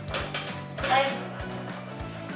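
Background music with a steady beat, with a brief voice about a second in.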